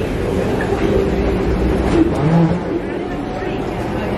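A steady low rumble from a long, moving escalator, with the murmur of people's voices over it.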